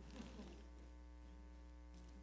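Near silence with a steady low electrical mains hum, and a brief faint sound about a quarter second in.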